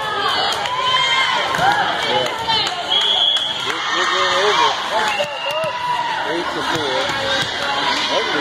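Many overlapping voices of players and spectators talking and calling out in a large gymnasium, with a few sharp knocks of a volleyball bouncing on the floor and a short high steady tone about three seconds in.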